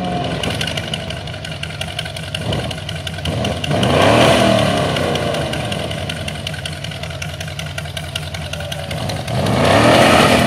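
Rat rod engine revving through an open exhaust rigged to shoot flames, with a rapid crackle of exhaust pops throughout. The revs swell about four seconds in and again near the end.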